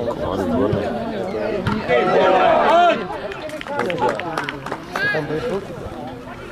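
Several voices shouting and calling over one another during football play, loudest about two to three seconds in, with another sharp shout about five seconds in.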